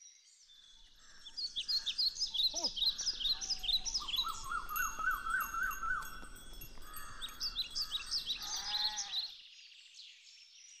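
Many birds chirping and calling at once, a busy chorus of short high notes, with a lower repeated call in the middle and a short lower animal call near the end. The chorus starts about a second in and cuts off suddenly shortly before the end.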